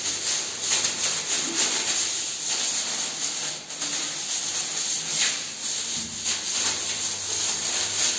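A hand-held bristle broom scrubbing a tiled bathroom floor spread with bleaching powder, in rapid repeated scratchy strokes, about two a second.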